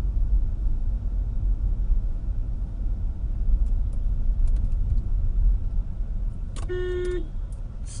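Car's engine and road rumble heard inside the cabin, steady and low, with a short car-horn honk of about half a second near the end.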